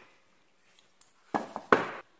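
Handling noises on a tabletop: a faint click about a second in, then two louder knocks as a small hinged box is set down and a small tube is picked up.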